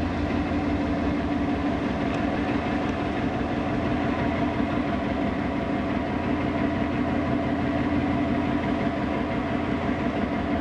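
Passenger ship's engine droning steadily, heard from the open deck, a constant low hum that does not change.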